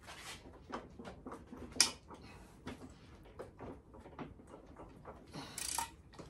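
Faint, irregular clicks and knocks of a socket ratchet being fitted to and pulled on a stiff main bolt of a two-stroke Johnson outboard's powerhead. One sharper click comes about two seconds in.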